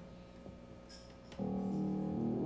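Yamaha grand piano starting an introduction with sustained chords about one and a half seconds in, after a quiet pause with a couple of faint clicks.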